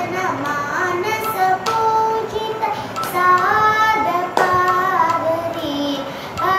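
A young girl singing a Carnatic devotional song solo, one voice holding long notes and gliding between them in ornamented phrases.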